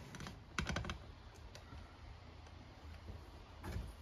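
A quick cluster of light clicks about half a second in and two fainter clicks around a second and a half, then quiet room tone.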